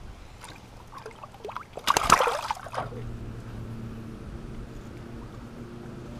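A walleye splashing in the lake as it is released over the side of a boat, a short burst of water noise about two seconds in. After it a steady low motor hum begins and carries on.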